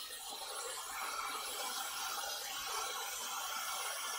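Dyson hair dryer with a diffuser attachment running at a steady pitch, an even hiss of blown air.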